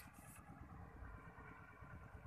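Near silence: a faint, uneven low rumble from outdoors, with no distinct event.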